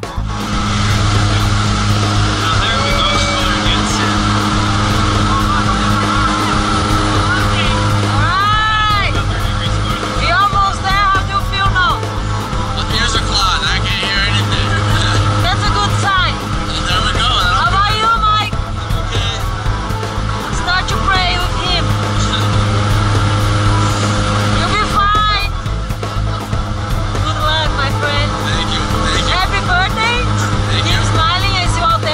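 Steady drone of a skydiving jump plane's engines and propellers heard from inside the cabin during the climb, with voices calling out over the noise now and then.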